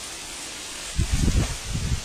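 Steady hiss, then low rumbling buffeting on the camera's microphone starting about a second in, as the handheld camera is moved.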